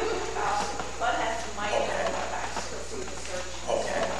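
Speech only: a person talking, too indistinct to make out.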